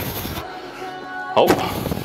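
Background music with a steady beat, over which the lifter gives a loud, strained breath-grunt while pulling a rep on a plate-loaded row machine, about one and a half seconds in; a shorter burst of breath comes right at the start.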